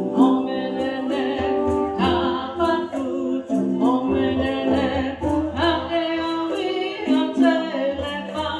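Live chant sung by a woman in repeated phrases of about two seconds, over a steady hand-drum and percussion beat.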